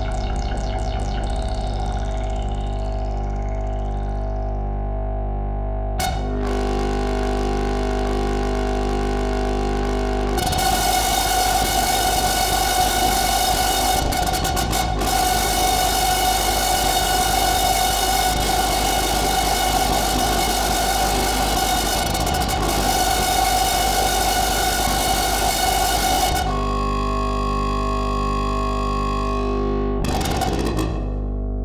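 Live-coded electronic music: layered steady drone tones over a strong low bass, which switch abruptly to a new chord about six seconds in. From about ten seconds it becomes a dense, noisy texture, then cuts back to layered steady tones about twenty-six seconds in.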